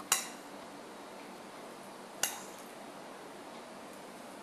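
A metal fork clinks twice against a ceramic plate, about two seconds apart, each with a short bright ring, as chocolate-dipped truffles are set down on the plate.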